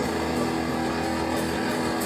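Electric guitar: a chord struck right at the start and left ringing steadily.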